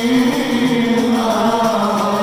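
Men chanting an Islamic Maulid devotional song together into microphones, their voices holding long, steady notes.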